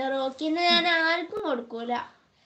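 A young child singing a short phrase in long held notes, in three breaths, with a single sharp click a little past halfway.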